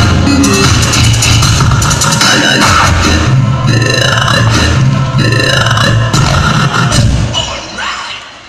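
Loud dance music with a heavy bass beat played over stage loudspeakers for a crew's dance routine, dropping away near the end as the routine finishes.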